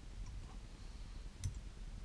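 Low steady room hum with one sharp click about one and a half seconds in: a metal bobbin holder knocking as thread is wound onto a hook held in a fly-tying vise.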